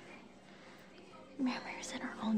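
Quiet room tone, then about one and a half seconds in a person speaks softly, close to a whisper.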